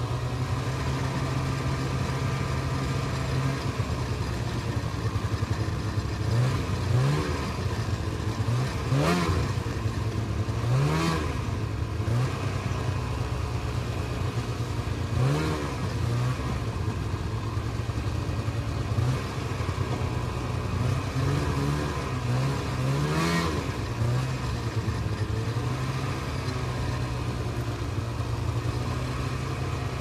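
Snowmobile engine running at a steady pitch and revved up and back down many times, in quick blips.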